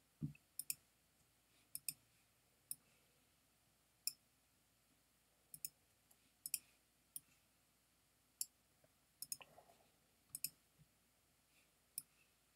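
Computer mouse clicking: irregular single clicks and quick double clicks, with near silence between them.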